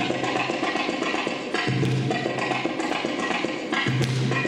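Belly-dance drum-solo music on the darbuka (Arabic tabla): quick runs of sharp strokes, with a deep low stroke about every two seconds.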